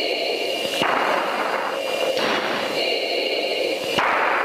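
Steady jet noise inside a fighter cockpit during climb-out: a constant rush of engine and air noise with a steady high whine over it, and a single click about a second in.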